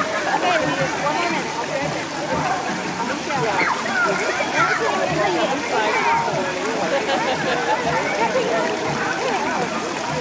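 Crowd of children and adults talking and shouting over one another in a swimming pool, with water splashing and sloshing.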